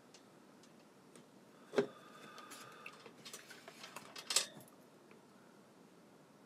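Handling noise from small objects being moved: a sharp knock, a brief squeak with light clattering, then a second sharp knock a little over two seconds later.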